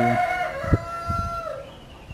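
A rooster crowing, one long drawn-out note that holds and fades out about a second and a half in, with a single short click in the middle of it.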